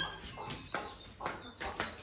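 A few faint, scattered knocks and scuffs.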